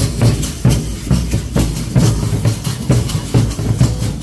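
Large rope-tensioned Congado drums beating a steady, driving rhythm.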